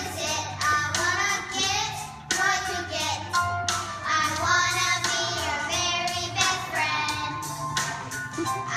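Group of young children singing a song together.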